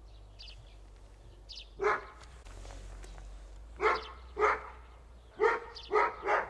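A dog barking: single short barks, the first about two seconds in, then four more in the second half, two of them close together each time.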